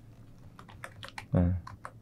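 Several quick, light clicks of computer keyboard keys, scattered through about a second and a half, as a document is scrolled down on screen.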